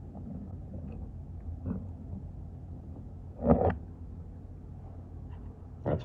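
Steady low background rumble with a few faint handling clicks, and one brief louder sound about three and a half seconds in.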